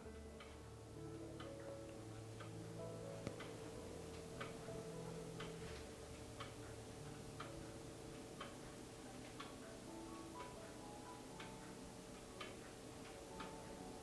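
Faint background music of soft held notes with a clock-like ticking, about one tick a second.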